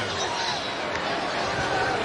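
Crowd and celebration noise from the field: many voices shouting and cheering at once, with single yells rising and falling over steady crowd noise and some dull thumps underneath.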